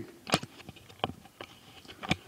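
Handling noise: a few light clicks and knocks, the loudest about a third of a second in and another about a second in, as the plastic figure and its parts are handled.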